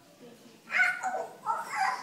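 A toddler's short, high-pitched vocal cries: two or three in quick succession, starting under a second in.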